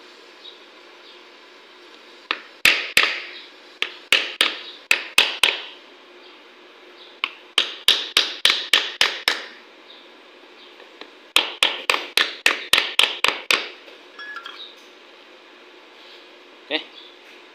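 A hammer beating on a wooden handle set against the black ABS sensor cap of a wheel hub bearing, driving the new sensor into the hub. The blows come in three quick runs of about eight to ten strikes each, roughly four or five a second, each a sharp knock with a short ring.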